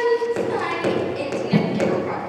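A voice holding a drawn-out note, then irregular taps and thumps, the loudest about one and a half seconds in.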